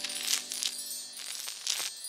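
Cartoon magic-sparkle sound effect: several short, bright, high tinkling shimmers over held chime-like tones that fade away, as a plant sprouts from the ground.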